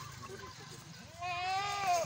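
A goat bleating once: a single long call that starts about a second in, rising in pitch and then holding steady.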